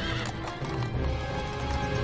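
A horse whinnies briefly at the start, then horses' hooves clop, over film-score music with held notes.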